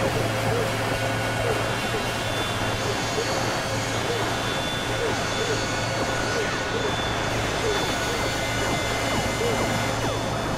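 Experimental electronic synthesizer drone and noise: a steady low hum with several held tones above it, under a dense hiss-like texture. Small chirping pitch sweeps repeat about twice a second throughout.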